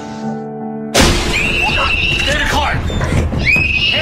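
Soft music with held notes, cut off about a second in by a sudden loud burst of high-pitched screaming and shouting over a low rumble.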